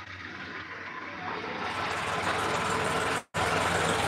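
Motor vehicle engine noise, a low steady rumble growing louder over the first three seconds. The sound cuts out completely for a moment near the end.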